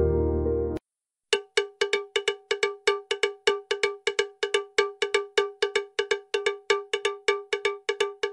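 Soft instrumental music stops just under a second in. After a brief silence, a bright, bell-like metallic note is struck over and over on the same pitch, about five times a second in a slightly uneven rhythm.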